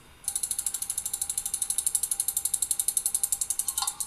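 Spinning online name-picker wheel ticking rapidly and evenly, about fifteen ticks a second, stopping just before the end as it settles on a name.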